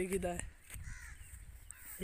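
A man's drawn-out calling voice ends about half a second in. After that there is only a low rumble of wind on the phone's microphone.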